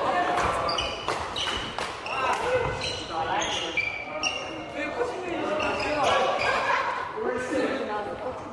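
Badminton doubles rally on an indoor wooden court: repeated sharp racket strikes on the shuttlecock and short high squeaks of court shoes on the floor, echoing in a large hall, with voices in the background.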